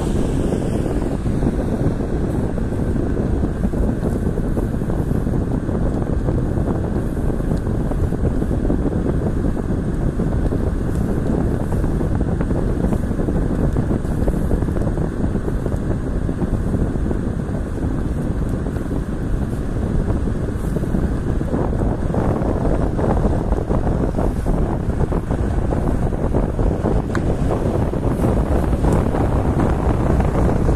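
Steady road and wind noise of a car driving along, heard from inside the moving car.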